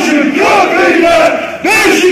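A large crowd of football supporters chanting and shouting loudly in unison, with a brief break between phrases about one and a half seconds in.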